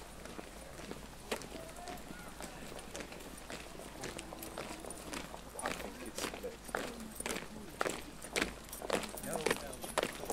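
Footsteps of a walking procession on a paved path, shoes clicking and scuffing, growing denser and louder in the second half as the walkers pass close, with low voices murmuring.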